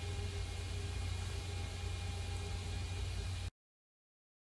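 Steady low hum with a faint hiss, like an open desktop computer's fans and power supply running, that cuts off suddenly to dead silence about three and a half seconds in.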